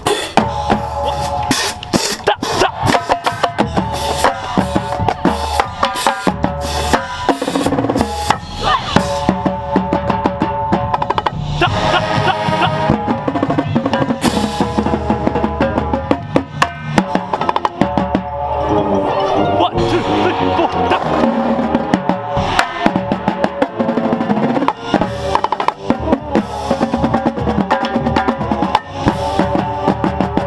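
Marching tenor drums (quints: four pitched drums and a small shot drum with Remo heads) played with sticks in fast, rhythmic patterns moving across the drums, each drum ringing at its own pitch. The rest of the drumline, snare drums among them, plays along.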